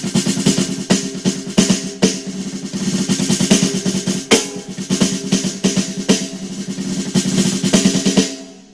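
Electronic snare drum sound triggered by sticks on a converted snare drum fitted with a Trigera internal trigger, heard through the drum module's speaker. It is played as fast strokes and short rolls with louder accents, and stops at the very end.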